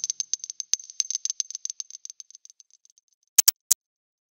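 A fast, dry ticking sound effect, about eight ticks a second, fading out over about three seconds, then three sharp clicks close together near the end.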